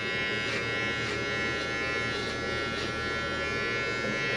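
Electric hair clippers running with a steady hum as they cut the hair at the back of the head.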